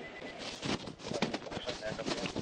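Scuffle as a person is pulled out of a car: irregular knocks and rustling of bodies and clothing against the car door, with short broken vocal outbursts.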